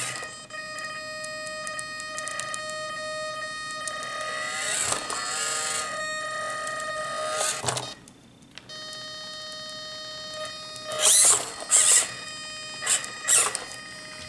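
Electric drive motor and speed controller of a 1/18 scale Eazy RC Patriot crawler whining steadily on the table, the throttle trim set off neutral so the motor drive buzzes without throttle input. The whine wavers in pitch about five seconds in, stops briefly near the middle, and the motor spins up in several short bursts near the end.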